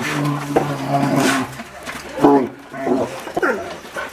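Young brown bears vocalizing as they feed: a steady low pitched call for about the first second, then a few shorter calls that rise and fall.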